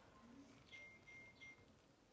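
Near silence: room tone, with a few very faint brief sounds about a second in.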